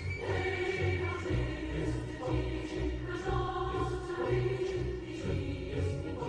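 A choir singing long, held chords.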